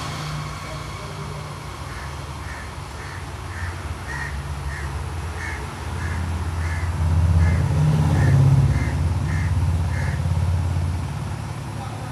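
A bird calls in a steady series of short calls, about two a second, over a continuous low rumble that swells about seven seconds in.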